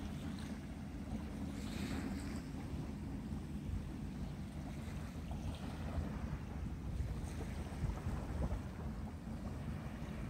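Steady low rumble of wind blowing on the microphone at the seashore.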